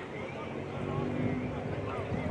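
Several voices of soccer players and spectators calling out and talking over one another at a distance, over a steady low outdoor rumble.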